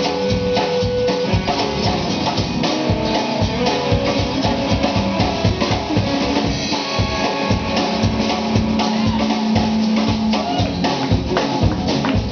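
Live country-rock band playing: a drum kit keeping a steady beat under acoustic guitar, electric guitar and upright bass, with some notes held.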